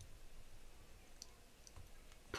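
Near silence with a few faint clicks from a computer mouse scroll wheel as a document is scrolled.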